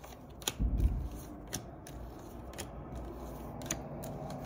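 Tarot cards being shuffled and handled by hand, with a sharp snap of cards about once a second and a low thump on the table just under a second in.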